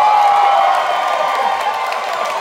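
Audience cheering and whooping, with one voice holding a long "woo" for over a second.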